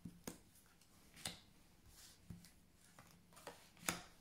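Oracle cards being drawn from a fanned spread and laid down one at a time on a cloth mat: about five faint, light taps and clicks spread across the few seconds, the last one the loudest.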